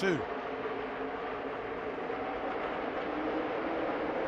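A field of NASCAR Xfinity stock cars' V8 engines running at full throttle together, heard as one steady, even drone.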